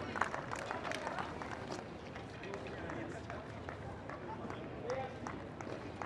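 Crowd of spectators chatting around a tennis court, a steady murmur of overlapping voices, with a few sharp claps or taps in the first couple of seconds.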